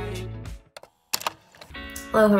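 Background song fading out, then a short gap with a few sharp clicks, and new acoustic guitar music starting quietly near the end.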